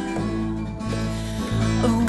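Folk trio instrumental passage: acoustic guitar picking over plucked upright double bass notes, a new bass note roughly every two-thirds of a second. Near the end a sliding melody line comes in above them.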